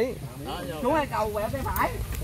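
Several men's voices talking in the background, quieter and overlapping, with no single close voice.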